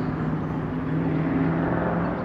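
Road traffic: vehicles running with a steady low hum and tyre noise, growing slightly louder in the second half.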